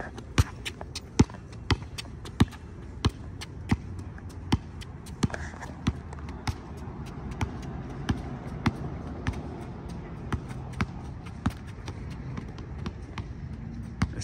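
A basketball dribbled on an asphalt court: a steady run of sharp bounces, roughly one or two a second.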